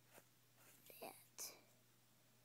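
Near silence, with a faint whisper about a second in.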